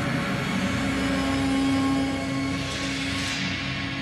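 Film background score: a sustained drone chord of steady tones, with a rising whoosh that swells over the second half and cuts off sharply just before the end.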